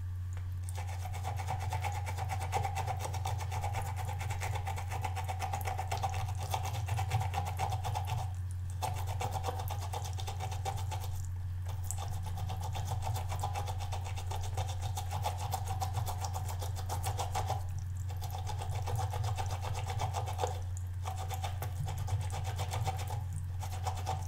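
A small watercolour paintbrush scrubbed rapidly back and forth across a ridged silicone brush-cleaning pad: a fast, scratchy rasp of bristles on rubber ridges, stopping briefly about five times. A steady low hum runs underneath.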